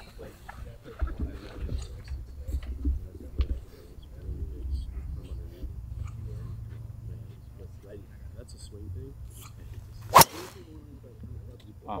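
A driver striking a golf ball off a tee: one sharp, loud crack about ten seconds in, over faint background talk.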